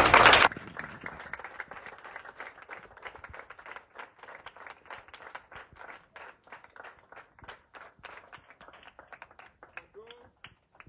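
A group of children clapping their hands, a fairly faint, dense patter of claps that goes on throughout. It opens with a brief loud cheer that cuts off sharply about half a second in.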